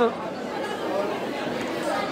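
A crowd of people in a large hall talking at once: a steady, even babble of many voices with no single clear speaker.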